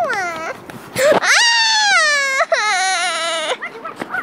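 A girl's voice letting out long, high-pitched wailing cries: a short falling squeal at the start, then a long cry about a second in that sinks slowly in pitch, running straight into a second held cry with a wavering pitch that stops short near the end.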